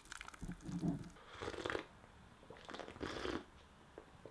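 A thick blended fruit shake poured from a blender jar into a mug, then drunk in a series of short gulps, about five in all.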